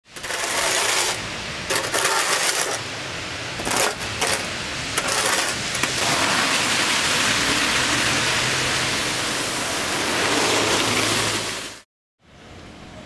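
A metal shovel scraping volcanic ash off a concrete pavement in four uneven strokes over the first six seconds. After that comes a steady rushing noise with a faint low hum, which stops abruptly just before the end.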